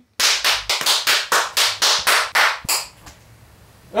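A fast, even run of sharp claps, about four a second, that stops a little under three seconds in.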